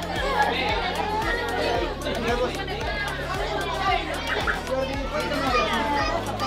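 Many women and children talking at once in a crowded room, over background music with a steady bass line.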